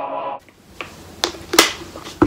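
A held electronic sound-effect tone, the end of a rising transition sweep, cuts off suddenly about half a second in. It is followed by three sharp clicks or smacks over the next second, the last one the loudest.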